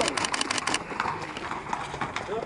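Hooves of walking racehorses clip-clopping on hard ground: a quick run of sharp clicks in the first second, then sparser ones.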